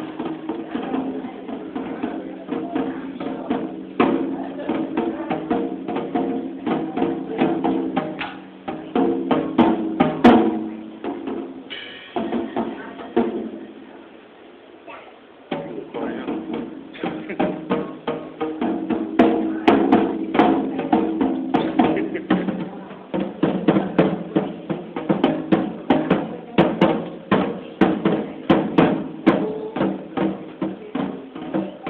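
A small child banging on a drum kit with sticks, fast irregular strikes on the snare and toms with the drum heads ringing. The playing stops for a few seconds about halfway through, then starts again.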